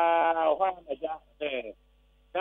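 A person speaking, with a long drawn-out vowel at the start, then short syllables that stop about three-quarters of the way through.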